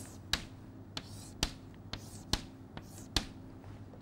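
Chalk striking and drawing across a chalkboard as grid lines are ruled: a series of sharp clicks, about two a second, some louder than others.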